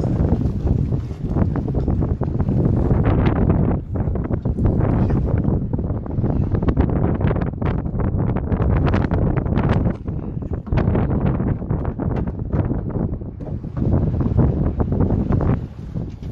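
Strong wind blowing across the microphone: a loud, gusty rumble that swells and eases again and again.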